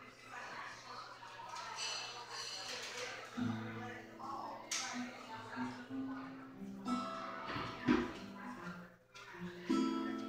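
Voices talking, then an acoustic guitar starts playing about three and a half seconds in, picking out the opening of a song.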